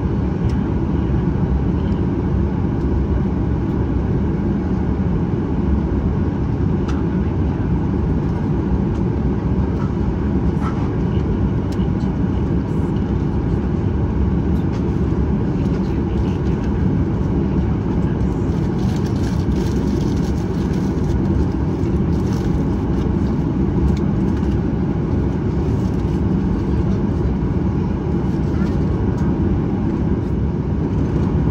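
Boeing 737-800's CFM56-7B turbofan engines at taxi power, heard from inside the cabin over the wing: a steady, low engine rush that holds even without rising.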